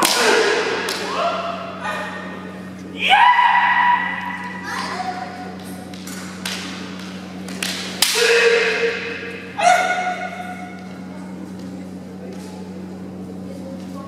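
Kendo bout: sharp cracks of bamboo shinai strikes and thuds of stamping footwork, each exchange with drawn-out kiai shouts from the fighters. The loudest exchanges come about three seconds in and again around eight to ten seconds, then it settles.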